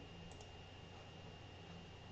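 Near silence: faint steady room hum with a couple of soft computer mouse clicks about a third of a second in.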